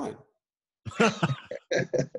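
A man coughing and clearing his throat in two short bursts, about a second in and again near the end, after a half-second gap of dead silence.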